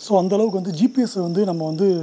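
A man talking, with a thin, steady high-pitched whine underneath throughout.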